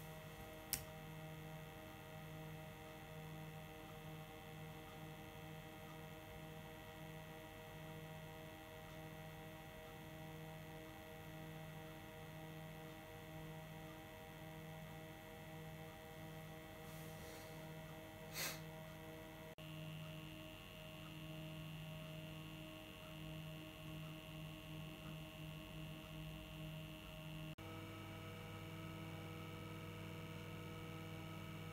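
Low, steady electrical hum made of several held tones with a faint pulsing at the bottom, broken by two brief clicks, one about a second in and one about 18 seconds in. The hum's tones shift abruptly twice in the second half.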